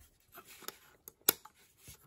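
Handling noise from a diecast model car held in the hands: faint rubbing of fingers on the body, small ticks, and one sharp click a little over a second in.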